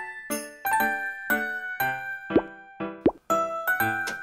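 Bright children's background music made of ringing, bell-like notes, with two short upward-sliding cartoon sound effects about two and a half and three seconds in.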